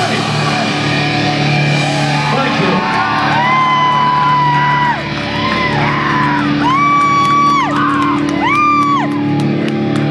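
A rock band playing live at full volume, with steady low bass notes under a high melody line that holds long notes and slides into and out of them.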